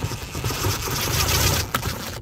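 DeWalt 20V cordless impact driver with a T25 Torx bit running steadily and hammering rapidly as it backs out the screw behind the Jeep's interior door-handle lever. It stops shortly before the end.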